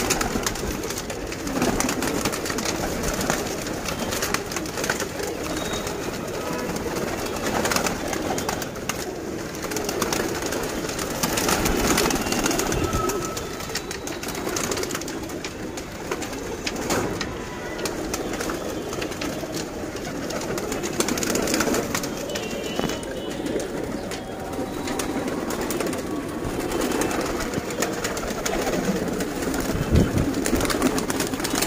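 A loft full of domestic pigeons cooing steadily together, with wings flapping now and then as birds take off and land on the perches.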